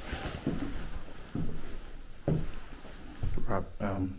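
Footsteps on old wooden floorboards, about one step a second, each step making the boards creak and groan.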